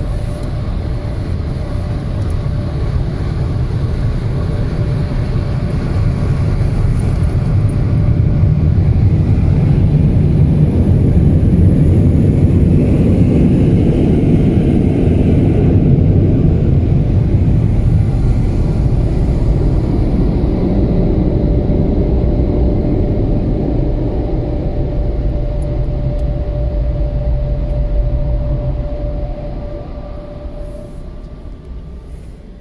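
Car wash air dryer blowers heard from inside the car: a loud, steady rush of air. It builds over the first several seconds, is loudest in the middle as the car passes under the blower, then fades and drops away near the end as the car leaves the tunnel.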